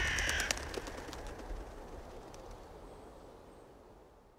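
A flock of birds taking off: a short call and a few wing flaps in the first half second. Under it, the low tail of a heavy boom dies away steadily to near silence.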